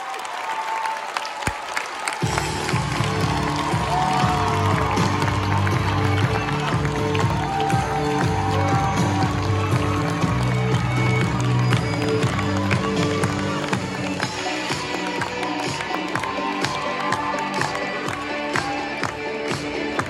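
A theatre audience applauding and cheering, with many sharp claps; about two seconds in, loud music with a strong repeating bass line starts up over the clapping as the cast leaves the stage.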